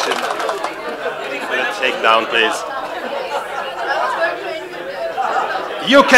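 Many people talking at once: overlapping chatter of several small groups speaking simultaneously.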